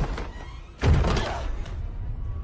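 A heavy thud a little under a second in, a movie sound effect of a body hitting the floor after a fall, over tense film score music.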